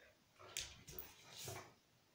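Two dogs at close range making three short, faint sounds in quick succession.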